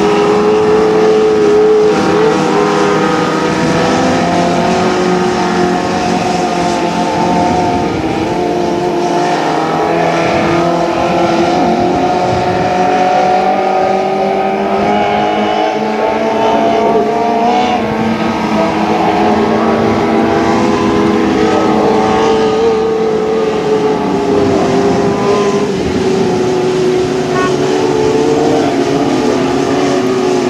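Several 600cc micro sprint car engines running together on a dirt oval, a loud steady drone whose overlapping pitches drift up and down as the cars circle.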